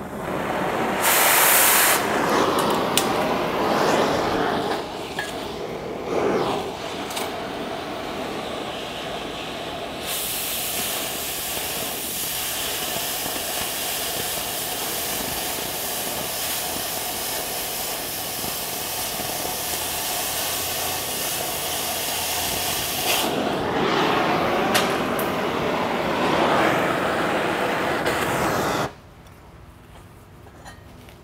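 Oxy-acetylene cutting torch hissing steadily as its oxygen jet cuts through the steel of an I-beam. The hiss turns harsher for a long stretch in the middle and stops abruptly near the end, when the cut is finished.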